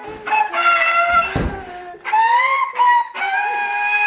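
A young girl singing long, high notes into a toy microphone, in three drawn-out phrases, with a dull thump about a second and a half in.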